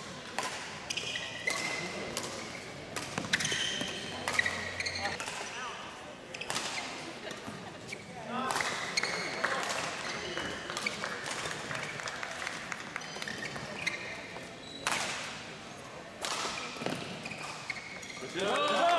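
Badminton rally: sharp racket strikes on the shuttlecock, irregularly spaced, with short high shoe squeaks and footfalls on the court floor. There are voices in the background, loudest about eight to ten seconds in.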